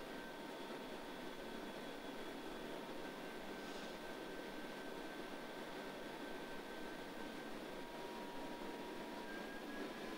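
Faint steady hiss with two thin steady tones from a Bausch & Lomb Stellaris Elite phaco machine during irrigation/aspiration. Near the end the lower tone stops and the upper one shifts slightly higher.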